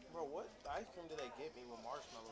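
Faint speech: voices talking in the background.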